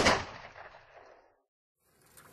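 A single loud bang, a gunshot-like sound effect, hits right at the start and dies away over about a second.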